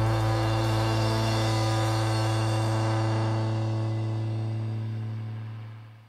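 A band's closing chord on electric bass and electric guitars, held and ringing out, then fading away to silence near the end.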